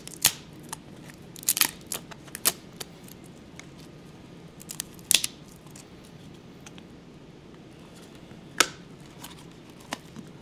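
Sharp cracks and pops as a plastic plate mould is bent to release a cured fiberglass-epoxy part, with some crinkling of the vacuum bag plastic. Several cracks come in the first three seconds, a strong one about five seconds in, and a loud single pop near the end.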